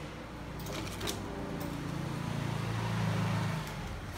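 Electric motor of an ETON ET-Q7 automatic cup sealing machine running through a sealing cycle: a low hum that swells and then stops shortly before the end, with a few light clicks in the first second and a half.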